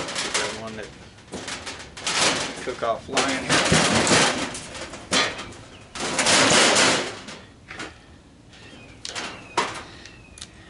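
Cordless impact driver with a socket running in several short rattling bursts, each opening with a quick rising whine, as it spins nuts and screws off a sheet-metal dryer panel. A few sharp metal clicks of tools being handled come near the end.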